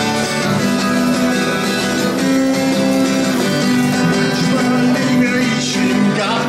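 Twelve-string acoustic guitar played steadily as an instrumental intro before the song's vocals.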